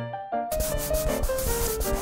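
Paper cut-outs rubbing and sliding against a paper page: a dry rustling scrape that starts about half a second in and lasts about two seconds. Light piano music plays under it.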